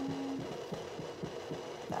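Facial steamer running, with a rapid low pulsing of about six beats a second over a faint hum.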